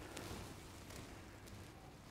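Near silence: a faint low background rumble with a few soft ticks.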